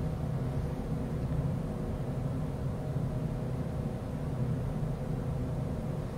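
Steady low hum of room background noise, even throughout, with no distinct events.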